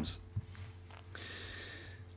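A pause in a man's speech: the end of a spoken word at the start, a faint click, then a quiet breath in during the second half, over a low steady hum.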